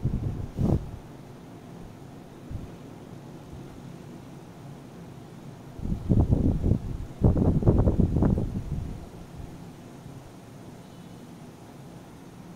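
Coloured pencil shading back and forth on paper laid on a desk, in quick rubbing strokes: a short spell at the start, then a longer run of about five or six strokes a second from about six to nine seconds in.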